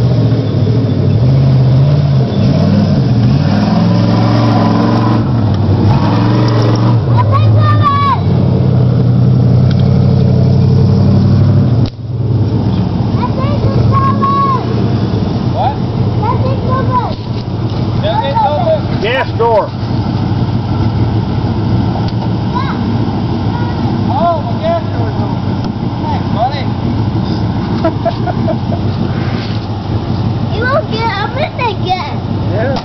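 Big-block V8 (a 460) in a lifted half-ton pickup on 38-inch Swamper mud tires, revving through mud, the pitch rising and falling. After a sudden break about halfway through, the engine runs lower and rougher while the truck rolls slowly, with people hollering over it.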